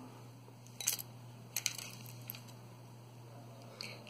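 A few faint, light handling clicks and taps, scattered and irregular, over a steady low hum.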